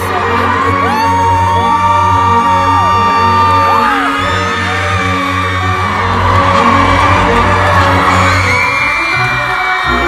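Loud music with a heavy, steady bass, and a concert crowd screaming and whooping over it in long, overlapping high cries.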